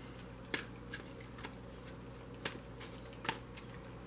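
A tarot deck being shuffled by hand: a handful of short, sharp card slaps and flicks at uneven intervals.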